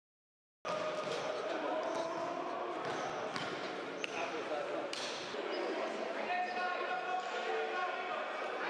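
Live game sound on an indoor basketball court: a basketball bouncing, with a few sharp knocks, over a background of voices from players and spectators. It starts suddenly about half a second in, after silence.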